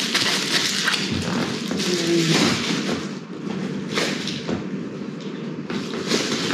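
A clear plastic bubble-wrap pouch crinkling and rustling as it is handled, with a few knocks of gear being moved.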